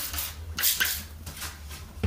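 Trigger spray bottle squirting cleaner in a few short hissing bursts in the first second, then quieter, over a low steady hum.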